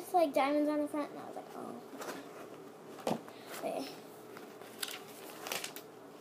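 A child's voice briefly in the first second, then scattered soft rustles and taps of a spiral notebook being handled and its cover opened to the lined pages.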